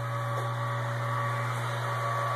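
Electric brewing pump running with a steady hum while it recirculates hot wort through a plate chiller.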